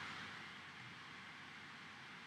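Near silence: a faint, steady background hiss of room tone, with no distinct sound.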